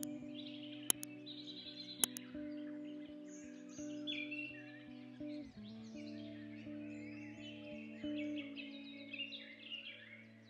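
Background music of sustained chords, shifting to a new chord about halfway through, with birdsong chirping over it. Two sharp clicks stand out in the first two seconds.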